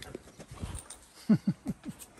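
A man's short laugh: four quick, falling "ha" sounds about halfway through, with faint soft clicks before it.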